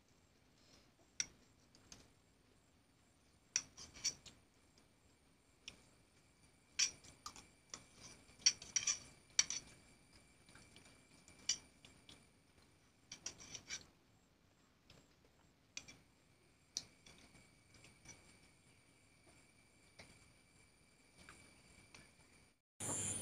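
Metal spoon clinking and scraping against a steel tin while scooping ice cream, in scattered single clicks and short clusters, a second or more apart.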